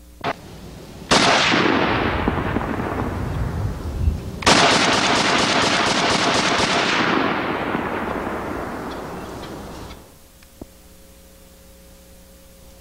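Browning 1919 belt-fed machine gun converted to semi-automatic, fired from its tripod. There is one shot about a second in, then a quick string of about a dozen shots, roughly five a second, starting around four and a half seconds in. Each shot leaves a long echoing tail that fades over a few seconds.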